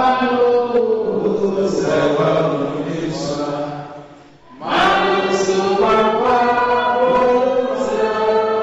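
A man's voice singing a slow, chant-like song into a microphone, with long held notes and a brief break about four seconds in.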